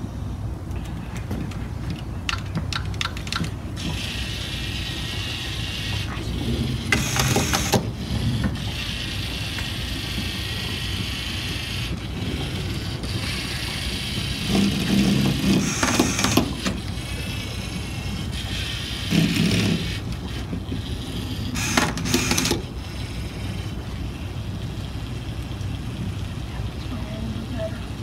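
LEGO Mindstorms robot's electric motors and gears whirring as it drives and works its attachments, with a few louder clacks and bursts along the way.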